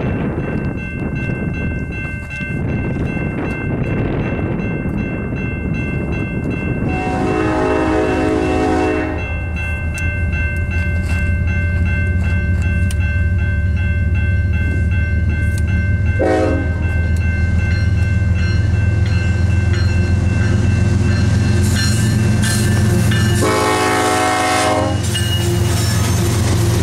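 A GE ES44AC locomotive's rare hybrid K5HLA horn sounds a long chord, a brief short blast, then another long chord, a grade-crossing signal as it nears the crossing. The locomotives' diesel engines rumble louder and louder as the train closes in.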